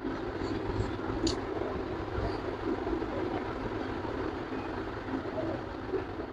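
A person chewing a mouthful of rice with the lips closed, with a sharp mouth smack about a second in, over a steady low rumbling background noise.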